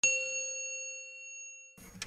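A single bright chime struck once, ringing with several clear tones and fading away over about a second and a half before cutting off: the sound of a channel logo sting.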